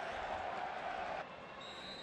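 Football stadium crowd noise that suddenly drops quieter about halfway through. Near the end a referee's whistle sounds as one steady high note, the whistle for the second-half kick-off.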